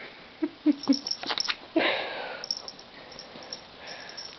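Dachshund chewing and tugging at a sock toy: a few short low grunts in the first second, some light clicks, and a breathy snuffle about two seconds in.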